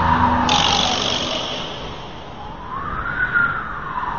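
A siren-like wailing tone that slides down, rises again about three seconds in and falls once more, over a high steady hiss.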